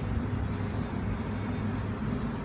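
Outdoor street ambience: a steady low rumble with no distinct events.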